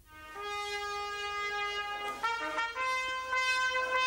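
Solo trumpet playing long held notes, with a brief quicker run of shorter notes about halfway through.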